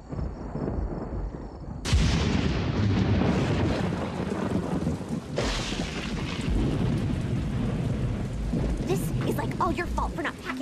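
Thunder rumbling, then a downpour of rain that starts suddenly about two seconds in and keeps on, surging again about halfway through. A voice comes in near the end.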